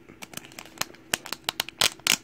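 Foil wrapper of a Pokémon trading card booster pack crinkling as hands grip it and pull at its top to open it: a quick irregular run of sharp crackles, loudest near the end.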